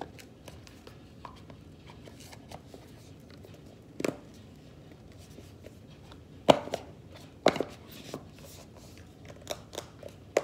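Hands handling a small cardboard AirPods box at a desk: light taps and rustles, with a few sharp knocks as it is set down or bumped, the loudest two a second apart about two-thirds of the way through.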